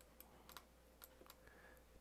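Near silence with about five faint, scattered clicks of a computer keyboard and mouse being worked.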